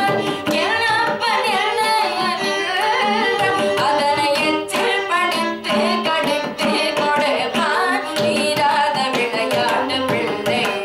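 Carnatic vocal music: a young female vocalist singing with sliding, ornamented pitch, shadowed by a bowed violin and accompanied by frequent mridangam drum strokes.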